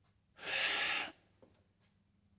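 A single audible breath from a man, a quick inhale of under a second about half a second in, followed by a faint click.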